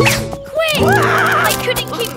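Cartoon background music, with a quavering, wobbling vocal sound from a character about a second in.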